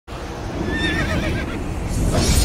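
A horse whinnying: one wavering high call lasting under a second, over a steady low rumble.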